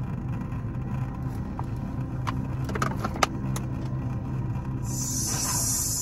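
Steady low hum of a car cabin with the engine running, with a few light clicks around the middle and a burst of hiss near the end.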